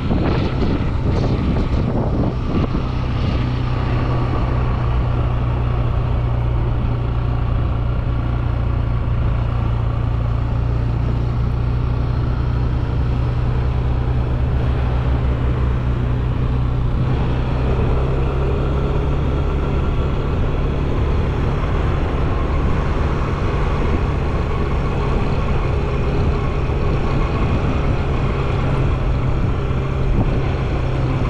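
Motorbike engine running steadily at cruising speed, with wind and road noise; the engine note shifts slightly about halfway through.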